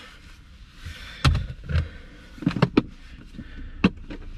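Handling noises inside a car: a handful of knocks and clunks as a book and a plastic Tupperware tub are moved about, ending in a sharp click near the end, over a faint steady hiss.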